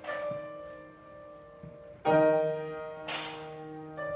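Grand piano played live, slow sustained chords: one struck at the start and a louder one about two seconds in, each left to ring and fade.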